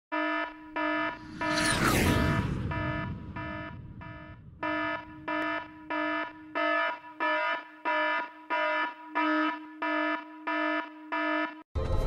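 An alarm sounding in short buzzing pulses, about one and a half a second. About two seconds in, a whistle falling steeply in pitch passes over a rush of noise.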